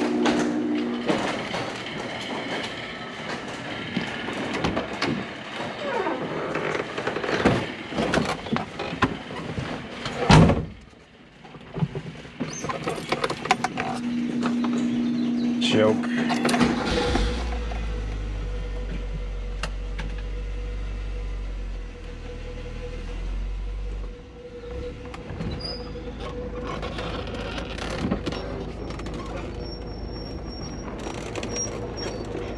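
Car door handling and a loud door-shutting thump, a steady electric buzzer tone for a couple of seconds, then the small Renault hatchback's four-cylinder engine starts just past halfway and idles steadily.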